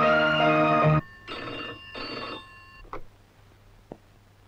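Film background music with sustained chords cuts off abruptly about a second in. A telephone then rings with one double ring, followed by a couple of faint clicks.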